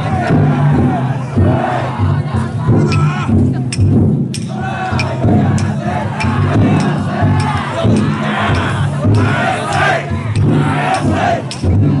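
A crowd of festival float bearers shouting and calling out together, many voices overlapping throughout, with sharp knocks now and then.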